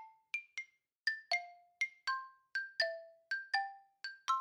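Background music: a light melody of single struck notes that each fade quickly, about two or three notes a second.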